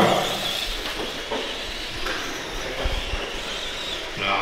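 Small electric RC monster trucks running on the track, a steady noise of motors, gears and tyres, with a few low thumps about three seconds in.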